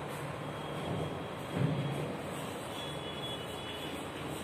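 Steady background rumble of room noise in a classroom, with one short low thump about a second and a half in. Faint light ticks of chalk on a blackboard start near the end.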